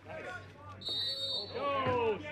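A single short, high referee's whistle blast lasting under a second, with voices shouting around it.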